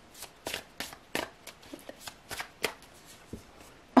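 A deck of tarot cards being shuffled by hand: a run of irregular short flicks and snaps of card stock.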